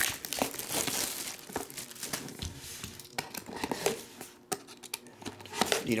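Plastic shrink-wrap being torn and crumpled off a trading card box: a run of crinkling and crackling, loudest in the first couple of seconds and fainter after that.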